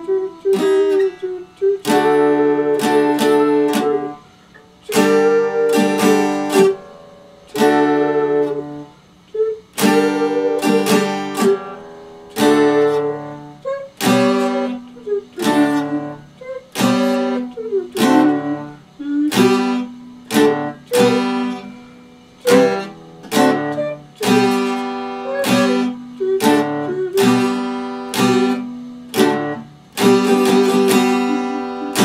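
Epiphone acoustic-electric guitar played unaccompanied: chords strummed about once or twice a second and left to ring, moving through a chord progression.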